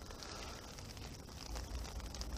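Faint outdoor background noise on an overcast campsite, with a low rumble that swells slightly about one and a half seconds in.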